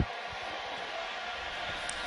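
Steady stadium crowd noise picked up in a commentary booth, with a short thump at the very start.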